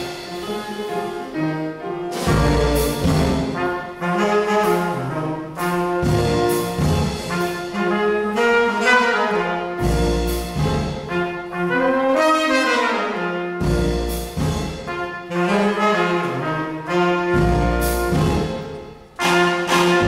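Live small jazz band playing: trumpet, saxophone and trombone sounding a melody together over piano, upright bass and drums, in short phrases with strong low accents every few seconds.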